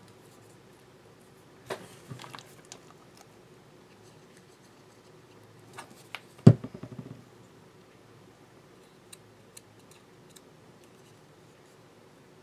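Faint handling sounds of a rolled paper bead on a bead-rolling tool: scattered light rustles and ticks, with a sharp tap about six and a half seconds in.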